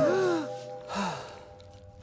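A cartoon character's shocked gasp, a short vocal cry rising then falling in pitch, over a held musical chord that fades away. A second, lower short vocal sound comes about a second in.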